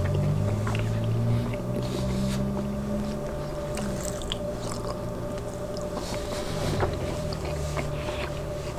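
Close-miked chewing and wet mouth clicks of a man eating a grilled asparagus spear. Under them a low hum runs for about the first three seconds, fades, and comes back near the end, with a faint steady tone throughout.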